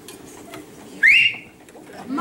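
A single short whistle, about a second in, sliding up in pitch and then holding briefly, over a low steady murmur of room noise.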